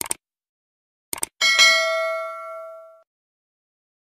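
Subscribe-button animation sound effect: quick mouse clicks at the start and again about a second in, then a bright notification-bell ding that rings out and fades over about a second and a half.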